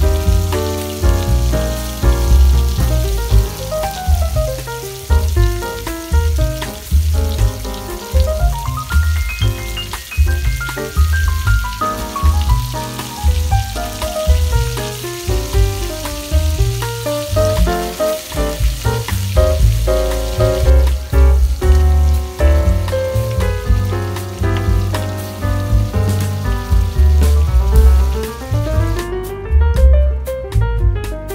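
Background music with a pulsing bass and a melody, laid over the steady sizzle of hamburger patties frying in oil in a pan.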